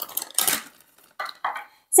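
Plastic mailer bag being slit open with a utility knife and handled: two or three short scratchy cutting and crinkling noises, one at the start and another about a second in.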